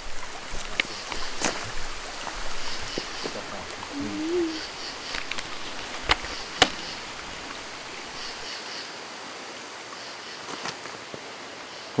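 A faint, brief voice-like call that rises and then dips, about four seconds in, which the uploader captions as a kid's voice. A few sharp clicks or knocks, the loudest about six and a half seconds in, over a steady outdoor hiss.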